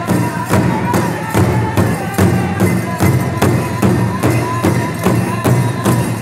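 Pow wow drum group playing: a large drum struck steadily, a little over two beats a second, with the singers' voices over it.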